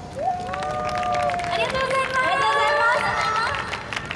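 Several high women's voices calling out together in long drawn-out shouts, overlapping at different pitches, with scattered clapping underneath.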